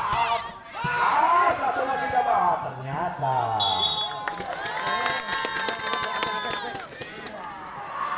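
Volleyball spectators shouting and cheering together after a point, with a short high whistle blast about three and a half seconds in, followed by a few seconds of rapid clapping.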